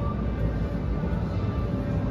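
A steady low rumble, with faint background music and a few thin held notes that come and go.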